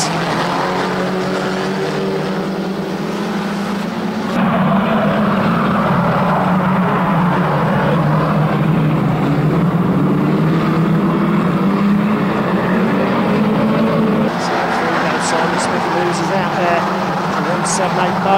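Engines of several banger racing cars running hard around the oval in a steady, loud mixed drone. It grows louder about four seconds in as the pack passes closer and eases slightly near the end.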